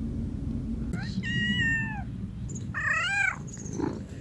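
A kitten meowing twice: a long, high call about a second in that drops in pitch at its end, then a shorter, wavering meow.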